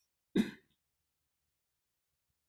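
A single brief throat clearing, about a third of a second in.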